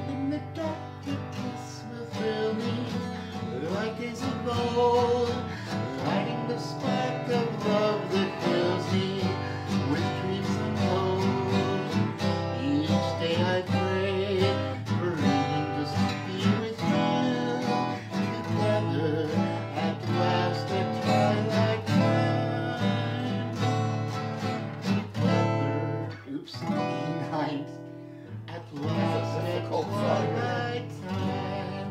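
Acoustic guitar played solo, strummed chords under a picked melody that slides into its notes.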